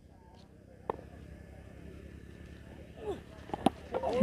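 Faint outdoor background at a cricket ground: a steady low rumble with distant voices, and two sharp knocks, one about a second in and one near the end.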